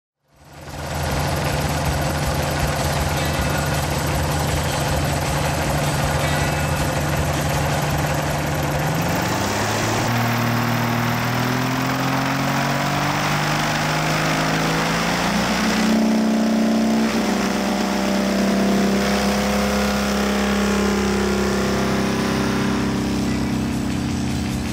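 Avid Flyer MkIV light aircraft's engine and propeller running as the plane taxis on grass. The engine pitch climbs over several seconds about a third of the way in, then holds steady at the higher speed.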